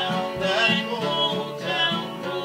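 Two acoustic guitars strummed together while a woman and a man sing a folk song in duet.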